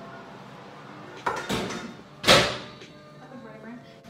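Oven door knocked open and then shut with a loud bang about a second later, the bang the loudest sound, with background music underneath.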